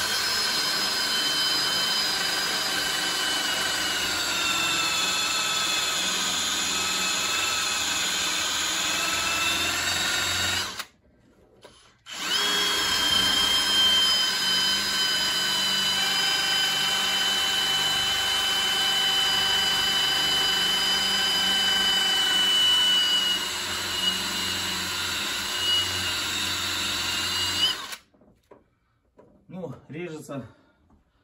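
Cordless drill spinning a rotary cutter to grind out the middle section of a GAZ Volga's intake manifold: a steady high whine whose pitch sags slightly as it bites. It stops for about a second partway through, then runs again and stops shortly before the end.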